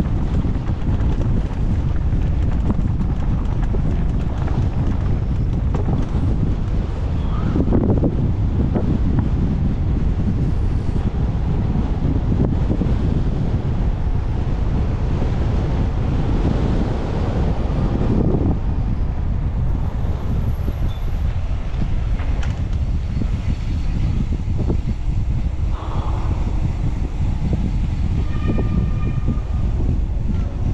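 Loud, steady wind rumble on the camera's microphone from a mountain bike riding downhill, mixed with the bike's tyres rolling over dirt singletrack and then pavement.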